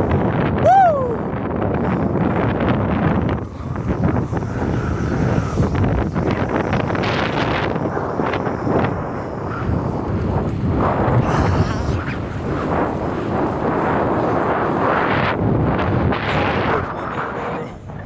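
Wind rushing and buffeting over a phone's microphone while riding fast along a street, a heavy steady noise. About a second in there is a short high cry that slides downward.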